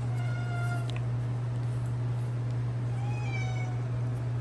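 A house cat meowing twice: one call at the start and another about three seconds in, the second falling slightly in pitch. A steady low hum runs underneath.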